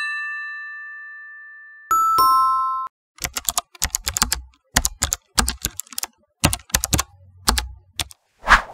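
An electronic chime rings and fades over about two seconds, and a second, brighter chime follows and cuts off short. Then comes a keyboard-typing sound effect: a run of quick, uneven key clicks for about five seconds, in time with on-screen text being typed out.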